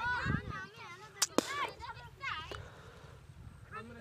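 High-pitched children's voices calling and shouting. Two sharp cracks come close together a little over a second in.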